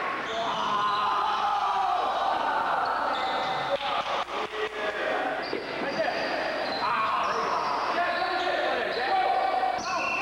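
Basketball bouncing on a hard gym floor, with a quick run of bounces about four seconds in, over indistinct voices echoing in a large hall.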